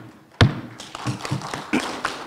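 A wooden gavel strikes the table once, sharply, about half a second in: the last of three knocks that formally open the session. A run of scattered light taps follows.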